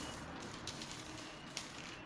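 Faint rustling of brown-paper pattern pieces as they are handled and slid about on a table, with a few soft knocks.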